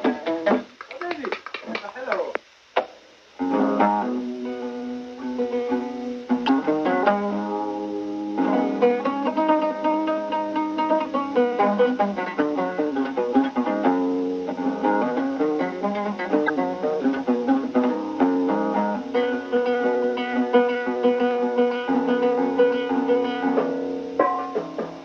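Kaban, the Somali oud, playing a plucked melody, with a short break about three seconds in before the notes pick up again.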